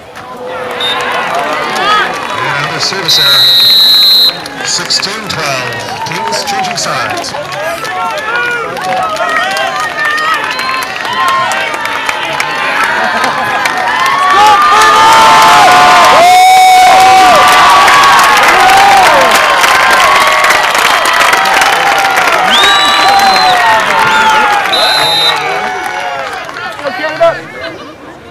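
A large crowd of spectators cheering and shouting, with many voices calling at once; the cheering swells to its loudest in the middle. A loud, high whistle sounds for about a second near the start, and two short whistle blasts come near the end.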